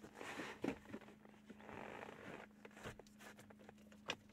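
Gear lever of a T5 five-speed manual gearbox worked by hand through its gates, giving soft sliding and rubbing sounds with a few light clicks from the shifter. The shift feels good, not stiff or seized after years of sitting.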